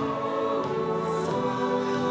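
A choir and small orchestra, with piano, drums, strings and French horns, come in together at the start and hold full sustained chords.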